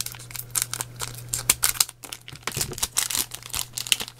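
Foil wrapper of a Japanese Pokémon booster pack crinkling in quick, irregular rustles as it is handled and worked open by hand, over a steady low hum.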